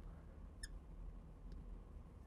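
Marker squeaking on a glass lightboard as it writes: one short high squeak about two-thirds of a second in, faint over a low room hum.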